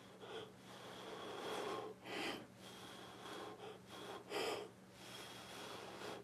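Soft puffs of breath blown at close range across wet acrylic pour paint, several short blows, the strongest about four seconds in, to enlarge the cells and blend them into the edges.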